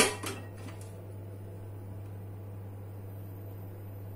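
A sharp click at the very start and a few lighter clicks just after, over a steady low electrical hum. The oil in the frying pan is not yet hot enough to sizzle.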